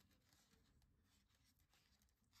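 Near silence: faint room tone with a few soft rustles.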